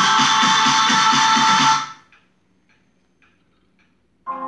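Music played from a Marantz CD-65 II CD player through loudspeakers, cutting off suddenly about two seconds in. A near-silent gap with a few faint ticks follows as the player moves to the next track.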